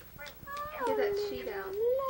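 A baby's long drawn-out whining cry, its pitch dipping and then rising again near the end.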